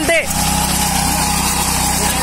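Engine of a Kamco walk-behind reaper running steadily while the machine cuts through a leafy field crop.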